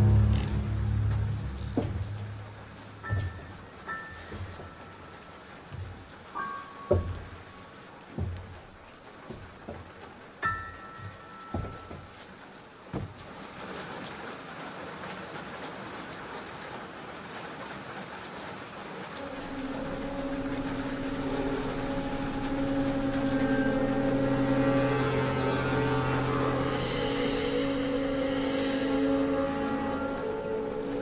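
Horror-film suspense score: sparse low knocks and brief high notes over a quiet hiss, then a low sustained chord that builds from about two-thirds of the way in.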